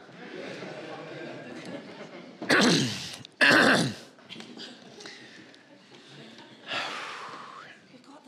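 A person breathing out heavily twice, close on a clip-on wireless mic. Each breath is voiced and falls in pitch. A softer breath follows near the end, over a low murmur of the room.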